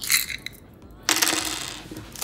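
A small metal nail-art display plate set down on the table, giving a sudden metallic clink about a second in that rings briefly and fades, after a light handling noise at the start.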